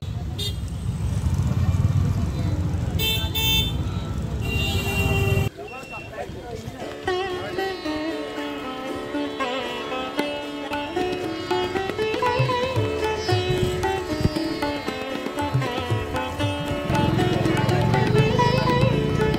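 Street traffic with a low rumble and a couple of short vehicle horn toots. About five seconds in, the sound cuts suddenly to instrumental background music with a melody.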